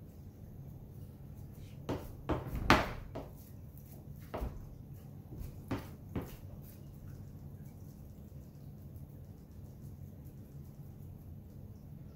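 Hands pressing raw pork sausage flat on a silicone mat in a metal sheet pan, with about six sharp knocks in the first half, the loudest a little under three seconds in, as the pan and hands bump on the counter. A steady low hum lies underneath.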